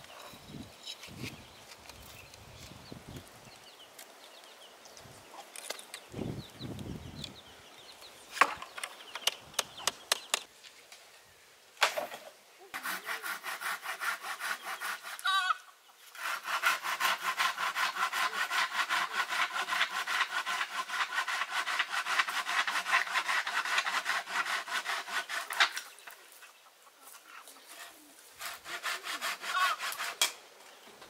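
Wood being sawn by hand: a few sharp knocks on wood, then a short run of rapid, even saw strokes, a brief pause, and a longer steady stretch of sawing of about nine seconds.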